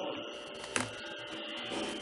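Steady background hum with a thin steady tone in it, and one short click a little under a second in.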